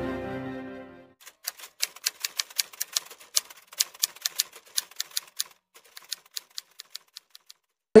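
Typewriter keystroke clicks in a quick, irregular run of several a second, lasting about six seconds and stopping just before the end. Theme music fades out in the first second.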